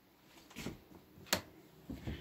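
Quiet room with faint handling noise and a single sharp click about a second and a half in.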